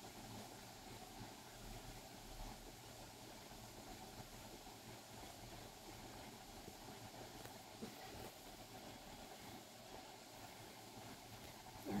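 Faint, steady sizzle of minced garlic, ginger and chili frying in sesame oil in a nonstick pan as they start to brown, with a couple of faint taps of a wooden spatula against the pan.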